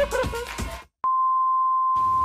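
A single steady, high beep tone starts with a click about a second in, after the music cuts off abruptly. It is a test-tone-like sound effect laid over a video static transition.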